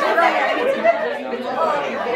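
Several people talking over one another: a group's overlapping chatter in a room.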